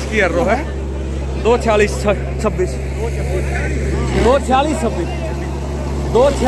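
A tractor engine running steadily under the voices of a crowd of men talking and calling out. The engine note dips briefly about four seconds in.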